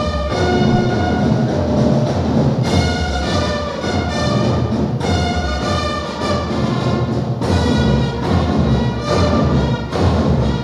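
Orchestral-style band music with brass and drums, playing held chords that change every second or two.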